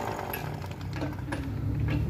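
A pneumatic impact wrench working on the lug nuts of a van's wheel: a low steady mechanical drone with a few sharp clicks.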